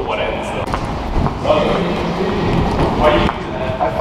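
Men's voices talking, not clearly made out, with a single thud about a second in.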